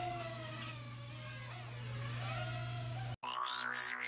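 Holy Stone F180C micro quadcopter's small motors whining as it flies, the pitch rising at first and then shifting up and down with the throttle, over a low steady hum. About three seconds in, the sound cuts off abruptly and electronic music with a steady beat takes over.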